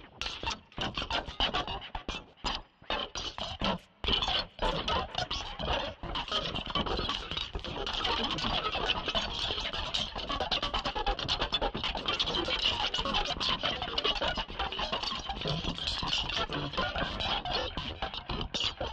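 Electronic music made with a heavily modulated Mimic synth in Reason, playing a resampled sound file: a dense, choppy stutter of rapid short hits. It drops out briefly a few times in the first four seconds, then runs on in a thicker, unbroken texture.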